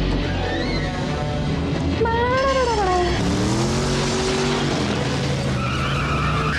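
Film soundtrack: orchestral score playing over a vehicle engine running, with a pitched phrase that rises and falls about two seconds in.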